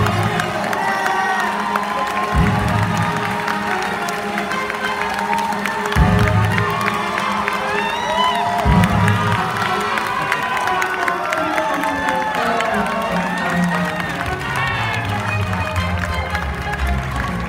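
An audience cheering, whooping and clapping over music with heavy bass thuds as an award winner is announced.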